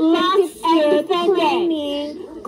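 A high-pitched, child-like voice singing in short phrases, with brief breaks between them.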